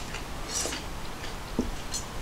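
Stainless steel tableware being set down on a wooden table: a few light clicks and taps, with a soft knock about one and a half seconds in.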